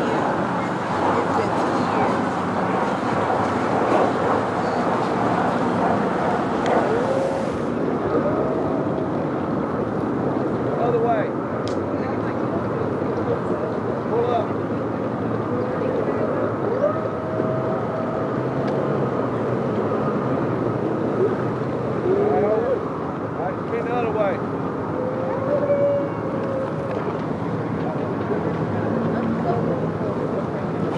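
Boat outboard motors running steadily, with indistinct voices of people nearby.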